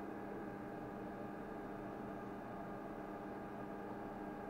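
Steady machine hum with several fixed tones, unchanging throughout.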